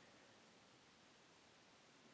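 Near silence: faint steady room tone and hiss.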